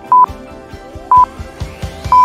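Short electronic beeps, one high steady tone each, about once a second over background music with a beat: a quiz countdown timer ticking down before the answer is revealed.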